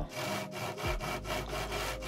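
Cordless drill boring a starter hole through a plywood panel for a router cut, the bit grinding steadily through the wood.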